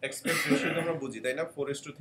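A person's voice: a short throat-clearing sound about a quarter of a second in, followed by speech.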